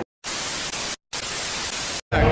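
An edited-in television static sound effect: two bursts of even hiss, each just under a second, split by a brief dead-silent gap.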